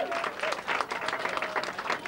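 Audience clapping and applauding at the end of a song, as the song's last held note cuts off right at the start.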